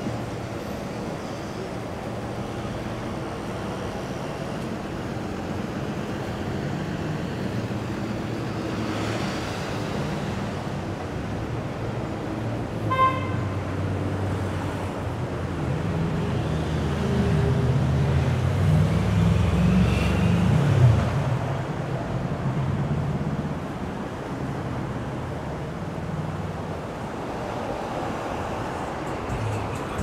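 City street traffic running alongside, with a short car horn toot a little before halfway and a vehicle's engine swelling as it passes about two-thirds of the way through.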